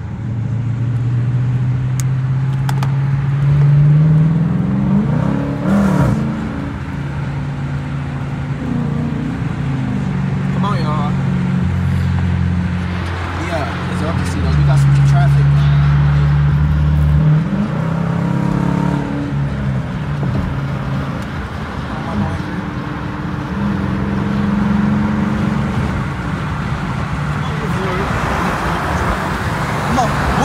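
Dodge Challenger R/T's 5.7-litre Hemi V8 accelerating on the freeway, heard from inside the cabin: the engine note climbs and drops back several times as it shifts up through the gears, loudest about four seconds in and again around the middle.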